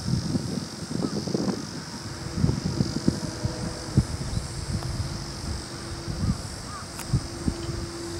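Wind buffeting the microphone in uneven gusts over a steady high-pitched insect drone and a faint low hum, with a sharp tap about four seconds in.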